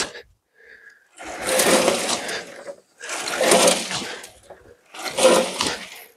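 Shovelfuls of clay-heavy garden soil being thrown onto a homemade angled soil sieve and rushing across the screen, three times, about every two seconds.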